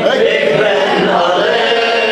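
A man chanting an Arabic Shia mourning elegy (rouwzang) through a microphone in one continuous melodic line.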